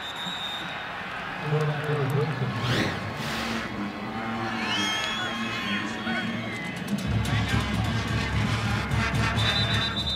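Stadium ambience at a football game: faint crowd hubbub and distant voices under background music, with a steady low bass coming in about seven seconds in.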